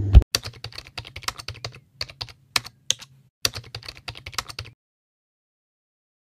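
Computer keyboard typing: a loud first key strike, then a quick, uneven run of key clicks with a brief break a little past halfway. The typing stops about three-quarters of the way through.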